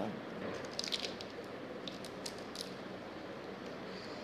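A few faint, short clicks and crackles over low room hiss, scattered from about half a second in to near three seconds.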